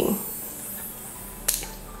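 Quiet room tone with a single sharp click about one and a half seconds in.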